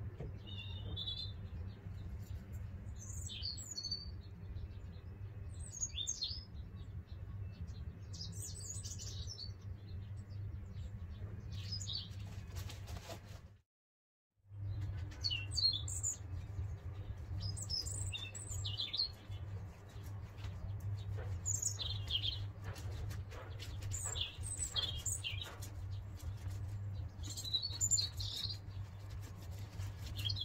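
Small birds chirping repeatedly over a steady low hum. The sound drops out completely for about a second midway, then resumes.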